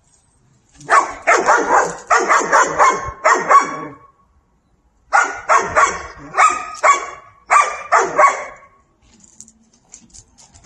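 A dog barking in two runs of quick, loud barks, about three a second, with a pause of about a second between the runs.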